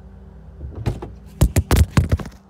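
Handling noise from a phone being picked up and moved: a quick run of loud knocks and scrapes against the microphone in the second half, over a low steady hum.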